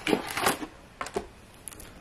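Trading card packaging being handled: rustles and light clicks of a cardboard blaster box and foil card packs, mostly in the first second, then quieter.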